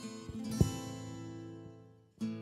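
Karaoke backing track in a gap between sung lines: a guitar chord strummed about half a second in, ringing on and fading away to a brief silence at the end.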